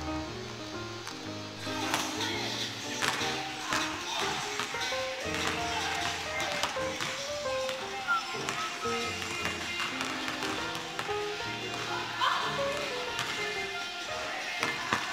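Background music: a song with held notes and chords, with a voice over it.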